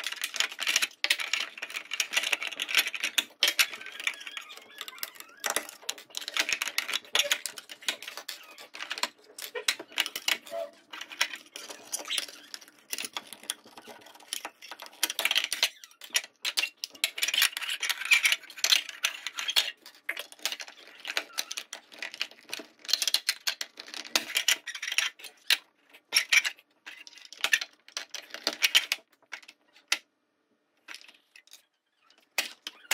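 Rapid, dense clattering and knocking of wooden fingerboard ramps and obstacles being picked up and set down on a wooden table, sped up in a time lapse.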